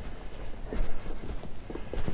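Footsteps on a cobbled lane, a few uneven steps knocking on the stones.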